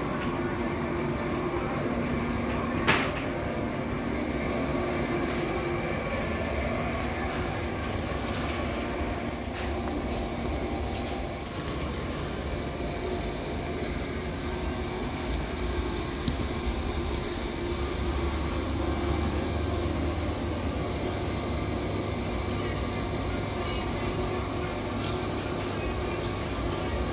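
Steady hum and low rumble of supermarket background noise, with a sharp click about three seconds in.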